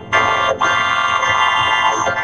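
Cartoon soundtrack heavily distorted by audio effects: a loud, buzzing mass of many steady tones like a warped synthesizer chord, dipping briefly about half a second in.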